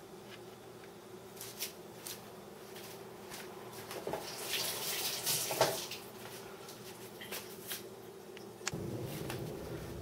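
Faint clicks and crackling of raw lobster tail shells being split apart and handled by hand, busiest around the middle, over a low steady hum.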